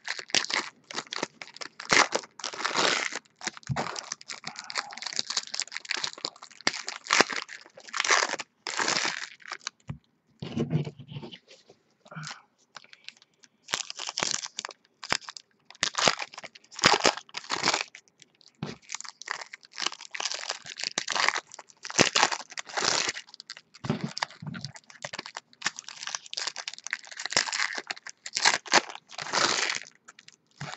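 Foil trading-card pack wrappers being torn open and crinkled by hand, in irregular bursts of rustling and crackling with a short lull about ten seconds in.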